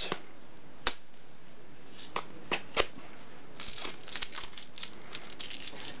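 Tissue-paper packing crinkling in a plastic deli cup as it is handled: a few single sharp clicks in the first half, then a run of quick crinkling from about the middle on.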